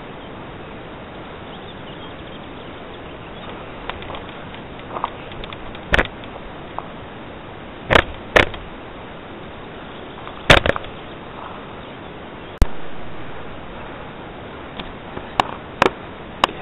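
Steady outdoor hiss on a camcorder microphone, broken by about five sharp clicks and knocks, the loudest about ten seconds in. After a click about three quarters of the way through, the background jumps louder and fades back over a couple of seconds.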